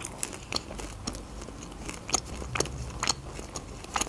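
Close-miked chewing of crisp pizza crust: irregular crunches and small mouth clicks, several a second.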